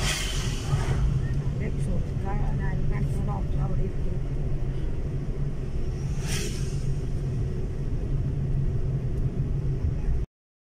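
Steady low rumble and hum of a car driving on a paved road, heard from inside the cabin. Two brief rushes of noise come at the start and about six seconds in, and faint voices are heard a few seconds in.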